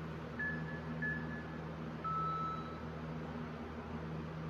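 Interval workout timer beeping: two short high beeps, then a longer, lower beep, the signal that the next 30-second work interval starts. A steady fan hum runs underneath.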